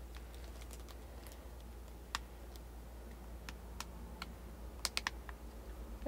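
Light, irregular clicks and taps as the flat pieces of a collapsible wig stand are handled and locked together and its small ring piece is fitted on. About ten sharp clicks, more of them in the second half.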